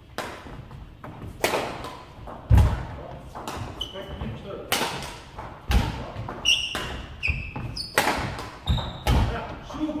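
Badminton drill in a reverberant sports hall: sharp racket hits on the shuttlecock about once a second, heavy footfalls and lunges thudding on the wooden floor, and a few short shoe squeaks in the middle.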